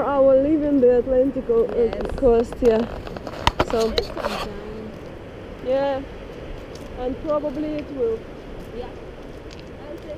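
A woman talking in short phrases with pauses, over a steady background noise, with a few brief knocks about four seconds in.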